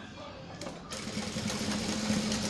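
Industrial sewing machine running slowly, stitching through a thick ruffled fabric rug. It is quiet at first, then starts about a second in and runs on with a steady low hum.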